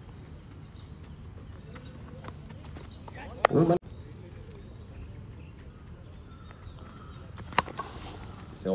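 Quiet outdoor background with faint insects, broken a little before halfway by a sharp click and a brief voice, then near the end a single sharp crack of a cricket bat striking the ball.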